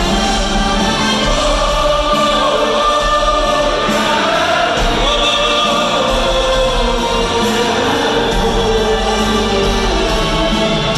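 Live concert music: a male singer with a large audience singing along in chorus, backed by an orchestra with strings, guitar and keyboard, in a reverberant hall.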